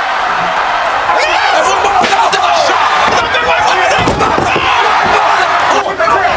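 Brawl with a metal folding table being swung and slammed, heavy impacts landing around four seconds in, over a constant din of shouting voices.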